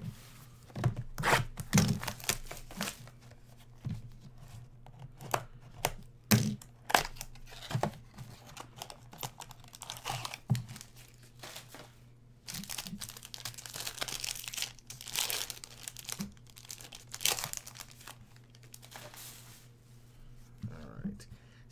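Trading card box and pack being torn open and handled: a run of tearing, crinkling and rustling with sharp clicks, including two longer bouts of rustling in the second half.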